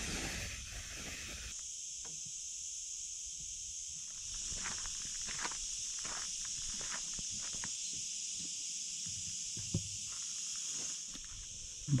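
Steady high-pitched insect chorus, with a few scattered soft clicks or light steps in the middle of the stretch.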